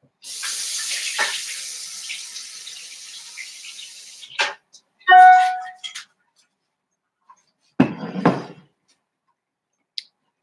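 Water running for about four seconds, as from a kitchen tap, fading as it goes. Then a click, a short ringing tone, and a brief clatter near the end.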